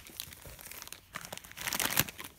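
Crinkly green plastic wrapper around hidden toy figures being handled: scattered crinkles, sparse at first and denser in the second half.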